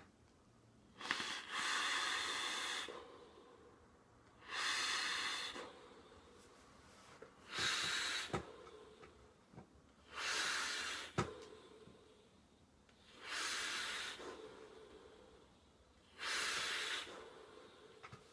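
Long breaths drawn through an electronic cigarette (a vape box mod and its atomizer) and blown out as vapour: six hissing breaths a few seconds apart. A couple of faint clicks fall between them.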